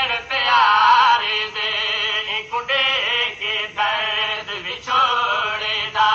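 A man chanting a nauha, a Shia elegy, in a sung recitation of long, wavering held notes broken by short pauses. The sound is dull and thin, as on an old radio recording.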